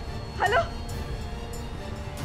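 Background music with a steady low drone, and one short, rising call of "hello" about half a second in.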